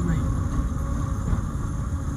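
A 1952 Morris Minor driving at about 30 mph: a steady low rumble of engine and road noise heard from inside the car.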